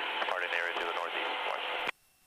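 Radio speech: a voice transmitted over the aircraft's VHF communication radio, thin and narrow-sounding, which cuts off suddenly near the end.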